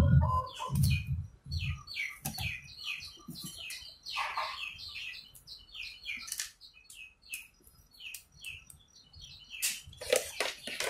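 Small birds chirping: a scattered string of short, high chirps, some sliding briefly down in pitch. A few sharp clicks near the end.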